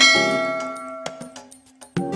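Notification-bell sound effect: one bright metallic ding struck once, ringing out and fading away over about a second and a half.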